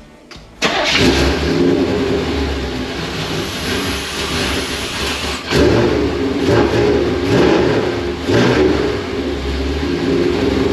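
1987 Corvette's 350 small-block V8 with tuned port injection catching and starting up less than a second in, then running, its note rising briefly twice, about five and eight seconds in. It starts on a replacement battery that had sat for six months, showing the battery still holds enough charge.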